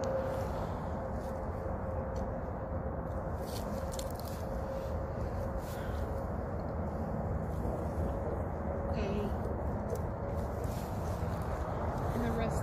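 Steady low outdoor background noise with a faint steady hum and scattered light clicks.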